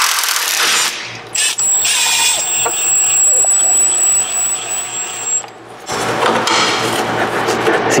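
Milwaukee Fuel cordless impact wrench running on a 13 mm sway bar link nut that is being counterheld with a wrench, loosening it against spring tension in the sway bar, with a steady high whine for about five seconds. After a brief dip near the six-second mark, a second, rougher stretch of mechanical noise follows.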